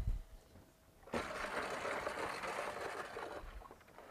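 Chalk scratching across a blackboard for about two seconds, after a low thump at the start.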